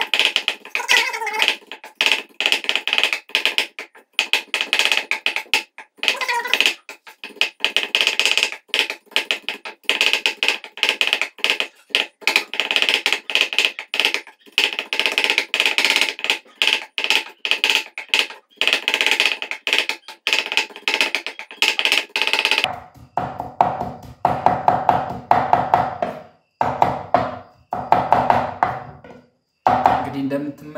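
A knife chopping tomatoes on a wooden cutting board: rapid, repeated knocks of the blade on the board in runs with short pauses.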